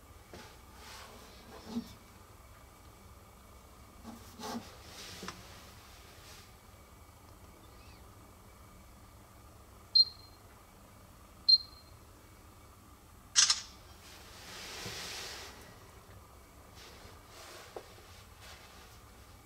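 Samsung Galaxy phone camera app: two short high focus beeps about a second and a half apart, then the shutter click a couple of seconds later. Faint knocks of phones being handled come earlier, and a soft rustle follows the shot.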